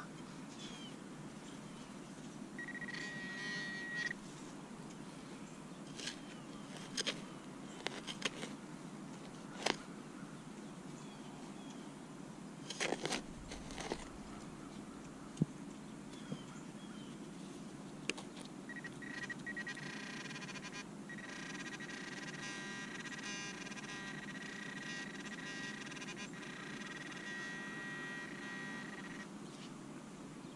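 Hand digging in grassy soil, with a few sharp knocks and scrapes through the first half. Two steady electronic metal-detector tones sound, a short one about three seconds in and a long one of about ten seconds from about two-thirds through, signalling a metal target in the hole.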